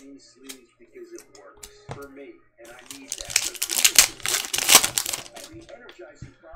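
Plastic wrapper of a basketball trading card pack being torn open and crinkled by hand: a dense burst of crackling about halfway in, lasting around two seconds, after a few faint clicks.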